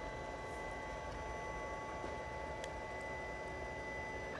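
Creality Ender 2 3D printer running its pre-print purge: the stepper motors give a steady high whine of several fixed pitches over a low hum, with a few faint clicks.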